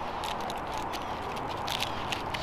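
Nylon webbing strap and steel hook of a tree gear hanger being slid around a pine trunk by hand: a run of small irregular scrapes, rustles and clicks against the bark.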